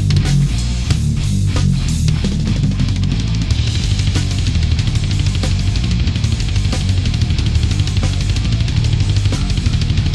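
Thrash metal band playing with electric guitar, bass and drum kit: separate accented hits for about the first two seconds, then a dense, driving passage.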